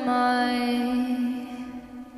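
A woman's solo singing voice holding one long note into a microphone, drifting slightly down in pitch and fading away about a second and a half in.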